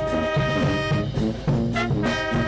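Cimarrona brass band playing: a sousaphone's low notes under a higher held brass melody, with sharp percussive hits.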